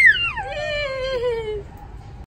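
A young boy's high-pitched shout: a squeal that drops steeply in pitch, then runs on as one long call sliding slowly lower, stopping about a second and a half in.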